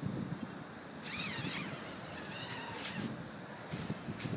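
Nylon tent door zipper being unzipped, a hissy rasp about a second in, followed by rustling of the tent fabric, with wind on the microphone.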